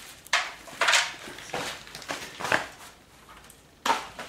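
Flint pieces and stones being handled: a series of sharp clicks and short clattering scrapes, about six in four seconds, the loudest about a second in.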